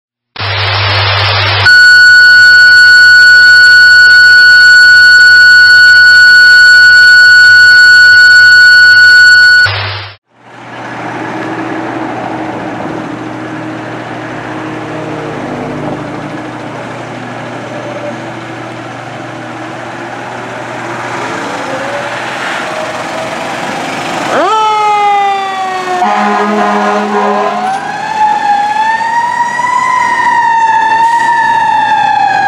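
A loud, perfectly steady electronic tone plays for about eight seconds, followed by a long stretch of steady idling rumble and hum. About twenty-four seconds in, the siren of a 2017 Ferrara Inferno fire engine sweeps in pitch. An air horn blast follows for about a second and a half, then the siren winds up into a rising, wavering wail.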